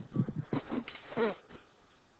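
Faint, indistinct speech of a student answering from the classroom, in short broken bits that die away about a second and a half in.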